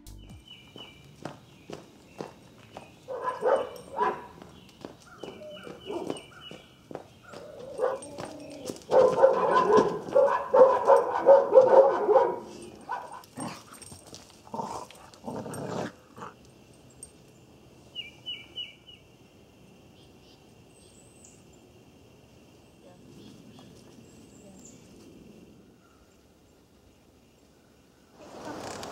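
A dog barking in repeated bursts, loudest in a run from about nine to twelve seconds in, then going quiet in the second half.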